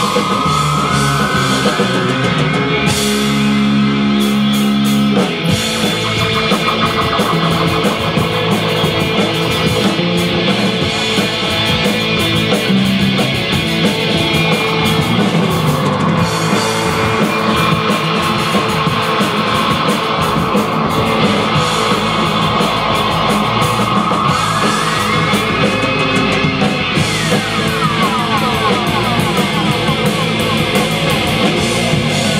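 Live rock band playing an instrumental passage: an electric guitar lead over bass guitar and drum kit. The guitar line slides up in pitch near the start, and climbs and falls again a few seconds before the end.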